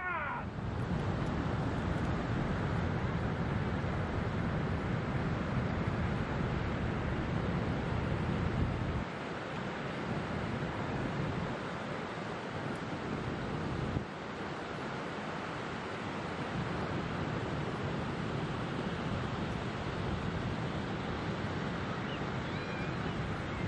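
Wind buffeting the microphone over breaking surf on a beach, a steady rushing noise with a heavy low rumble. The rumble drops away about nine seconds in and again at fourteen seconds.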